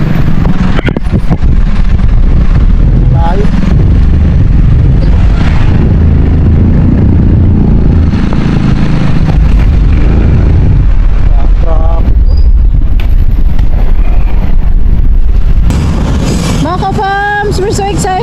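Motorcycle ride through traffic: loud wind rumble on the microphone over the bike's running engine and surrounding traffic. A voice comes in near the end.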